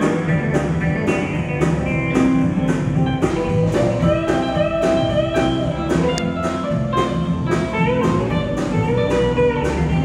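A live country-rock band plays an instrumental passage with no singing. An electric guitar line with bent, sliding notes rides over a steady drum beat of about three hits a second, with bass and keys underneath.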